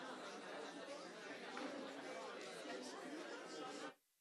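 Chatter of many people talking at once in a large meeting room, a steady hubbub of overlapping conversations that cuts off suddenly near the end.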